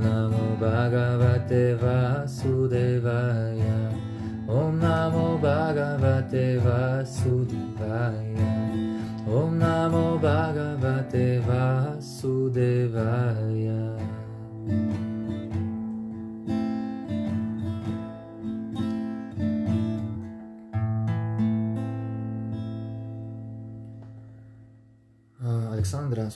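A man singing a mantra to a strummed acoustic guitar. His voice drops out a little past halfway while the guitar plays on, and a last chord rings out and fades away at the end.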